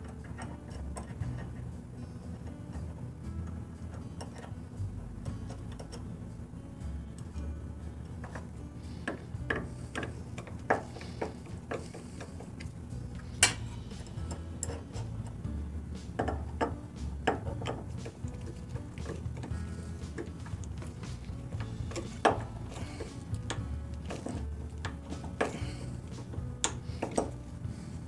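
Soft background music with scattered small metallic clicks and ticks from hand tools and the parts of an adjustable auger bit being handled. One click about halfway through stands out.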